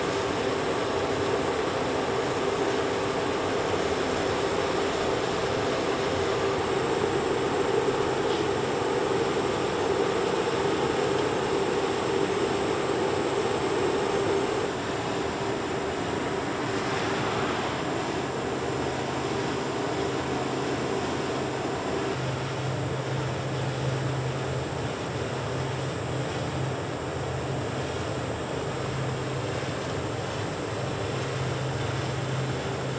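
A quadcopter drone's propellers humming over the steady rush of air from a fan-array wind-tunnel unit blowing at it. About halfway through, the hum drops in pitch and the whole sound gets a little quieter as the drone goes from climbing to descending, and a lower hum comes in later.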